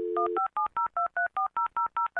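A steady telephone dial tone cuts off about half a second in. A quick run of touch-tone (DTMF) keypad beeps follows, about five a second, each a two-note chord, as a number is dialed.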